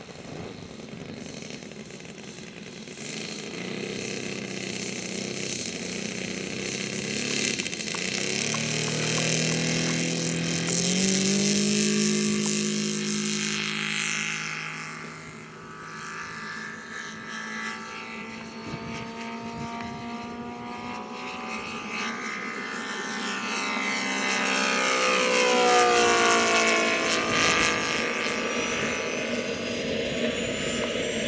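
Saito FG-90R3 three-cylinder radial four-stroke petrol engine of a large RC Focke-Wulf 190 opening up about a quarter of the way in, its pitch climbing through the takeoff. It then drones in flight with the pitch falling and rising as the plane passes by, loudest near the end, over a steady high hiss of jet exhaust.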